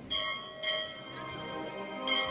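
A bell on the processional throne, struck twice about half a second apart, each stroke ringing on: the signal given to the throne bearers.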